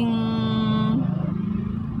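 A woman's drawn-out hesitation sound, one held note for about a second as she searches for a word, over the steady hum of the car she is driving, heard inside the cabin.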